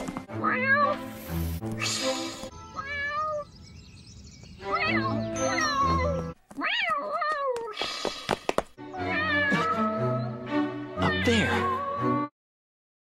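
A cartoon cat meowing over and over, a string of short rising-and-falling meows voiced by an actress, over soft background music.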